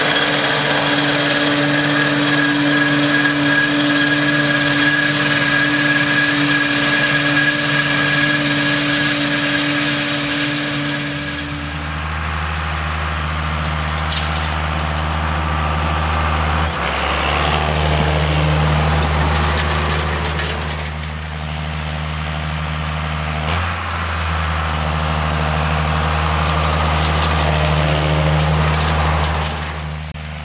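For about the first eleven seconds, a New Holland tractor runs a mower at steady engine speed, with a steady whine over the engine note. It then gives way to a John Deere tractor's engine running steadily in a low tone, driving across the field close by and then moving off.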